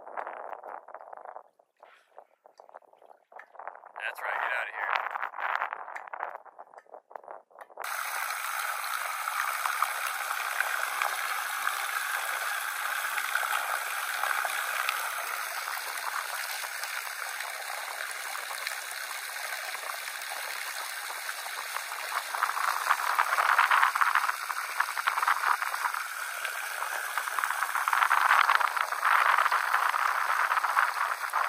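Water rushing and churning past a small pontoon boat under way, with its wake splashing at the stern. It is a steady hiss that begins abruptly about eight seconds in and swells louder twice near the end. It follows a few seconds of quieter, broken lapping.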